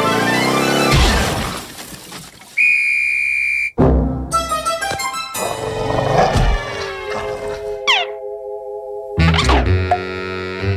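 Cartoon soundtrack music with comic sound effects, changing abruptly several times. There is a held high note about three seconds in and a quick downward slide in pitch about eight seconds in.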